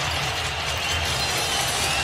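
Basketball arena crowd noise: a steady din of many voices with a low rumble under it.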